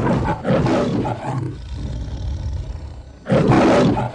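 Lion roaring like the MGM logo lion: a long roar that fades to a growl, then a short, loud roar near the end.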